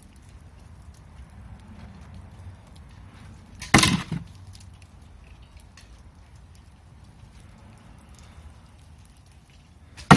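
A single sharp thwack about four seconds in: a bowstring released and the arrow striking the target block a few metres away almost at once.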